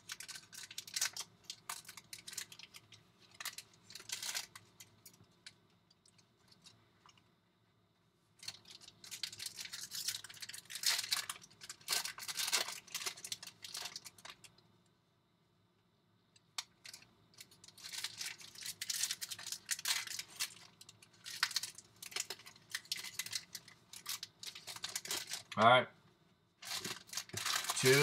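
Foil wrappers of 2020 Bowman baseball card packs being torn open and crinkled by hand, in spells of crackling separated by short pauses.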